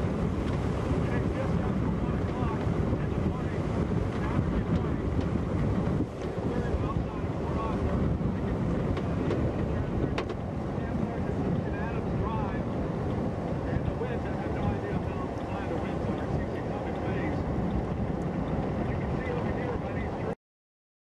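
Hurricane-force wind buffeting the microphone: a loud, steady, heavy rush of low rumbling noise that dips briefly about six seconds in.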